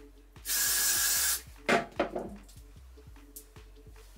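One burst of Got2b Glued hairspray sprayed onto a comb, an even hiss lasting about a second, followed by two short louder sounds. Background music with a steady beat.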